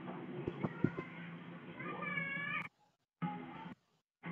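Live room sound from a V380 Pro Wi-Fi security camera's microphone, played back through the phone app. It is muffled and thin, with a steady din. About two seconds in comes a high, wavering call lasting under a second, then the sound drops out briefly.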